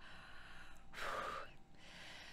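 A woman's single short, audible breath about a second in.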